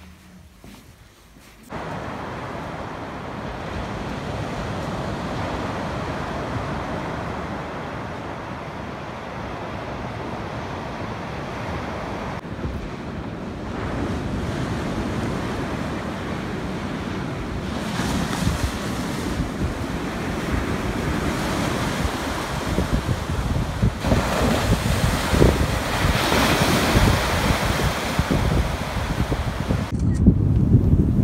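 Sea waves washing with wind buffeting the microphone, starting suddenly about two seconds in and growing gustier near the end.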